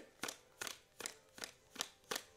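A tarot deck being shuffled by hand, the cards slapping together in short, even clicks about two or three times a second.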